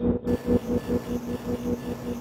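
Electronic ambient-industrial music: a fast, even low pulse at about seven beats a second over steady droning tones, with a layer of hiss that comes in about a quarter second in.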